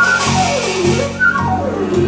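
Live jazz trio: a flute plays fast runs that fall and rise twice, over plucked upright bass and a drum kit with cymbals.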